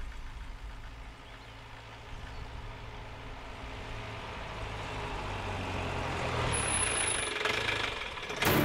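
Police jeep's engine running as it drives slowly up a gravel lane towards the listener, growing steadily louder as it approaches.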